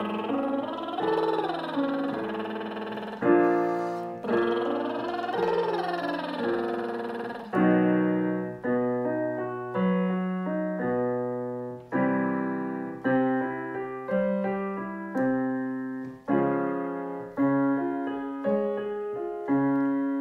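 Digital piano playing repeated arpeggio patterns while a voice does lip trills, buzzing through the lips and sliding up and down with each arpeggio. After about seven seconds the voice drops out and the piano carries on alone through further arpeggios.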